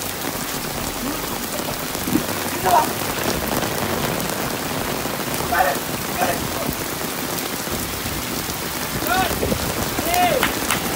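Steady rain falling, with faint voices heard briefly a few times.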